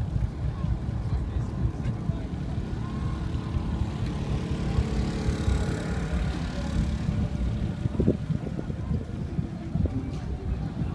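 A low, steady rumble of wind on the microphone and a bicycle rolling over packed desert dust. A faint steady hum rises and fades around the middle, and a few light clicks come near the end.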